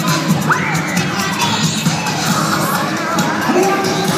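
A crowd cheering, with children shouting and whooping over cheer routine music.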